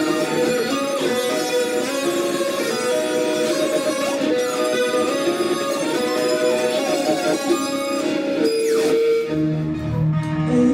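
Electric guitar playing a melodic line of held notes, some sliding in pitch.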